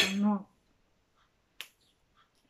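A single crisp snap, about a second and a half in, as a fresh green pea pod is broken apart by hand, followed by a few faint ticks.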